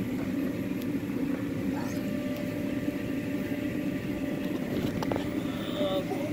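A steady low mechanical hum with a faint tone above it, with faint voices briefly about two seconds in and again near the end.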